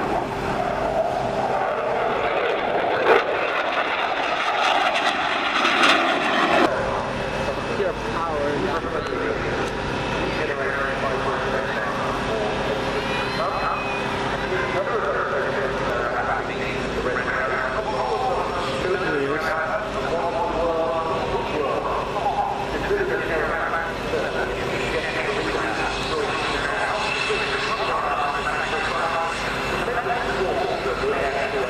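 Fighter jet's engine noise as it flies its display, stopping abruptly about six and a half seconds in. After that, crowd voices over a steady engine hum from the jet on the ground.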